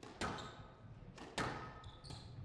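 Squash ball being hit during a rally: two sharp smacks about a second apart, each with a short echo.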